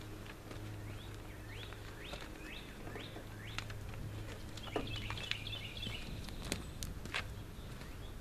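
Songbirds calling: a run of short rising chirps, with a warbled phrase about five seconds in. A low steady hum lies beneath and stops about six seconds in, with a few faint ticks.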